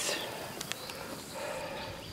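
Outdoor pasture background: a faint, steady high insect chirr with a couple of small clicks before the middle and a faint steady tone in the second half.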